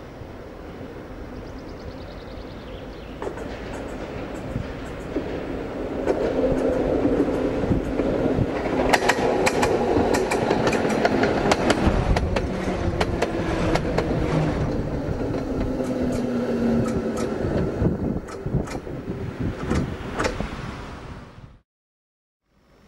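RVZ-6 two-car tram train approaching and passing close by, growing louder over the first few seconds. A hum slides lower in pitch as it goes by, while the wheels give many sharp clicks and clacks on the track. The sound cuts off abruptly near the end.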